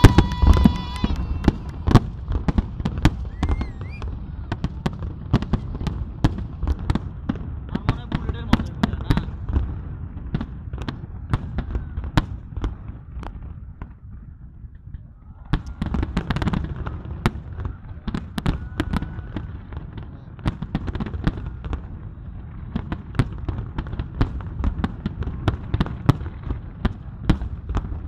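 Fireworks display: many rapid, irregular bangs and crackles from aerial shells over a low rumble. About halfway through there is a brief lull, then the bangs pick up again.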